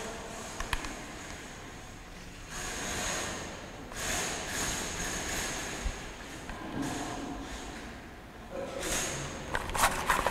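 Steel fish tape being drawn back through electrical conduit by hand, scraping in several pulls of one to two seconds each, with a few light clicks.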